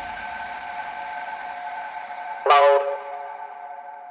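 Breakdown of a neorave techno track: a held synth chord with no kick drum or bass under it. A brighter synth chord stab comes in about two and a half seconds in and fades back into the held chord.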